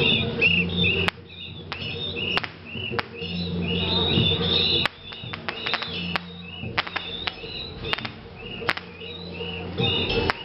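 Street procession din: a rapid, repeating high chirping over a low droning tone that comes and goes, with scattered sharp pops.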